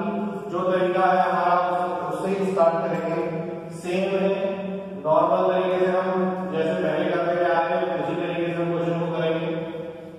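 A man's voice in drawn-out, sing-song phrases, each held on a fairly steady pitch for a second or so with short breaks between.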